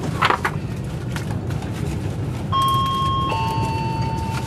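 Class 390 Pendolino electric train running, heard from inside the carriage as a steady low rumble, with a short clatter just after the start. About two and a half seconds in, the on-board public-address chime sounds two notes, the second lower, signalling an announcement.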